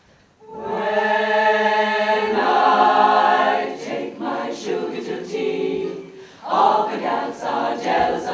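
A women's choir singing a cappella: they come in together about half a second in on a long held chord, then move into faster sung phrases.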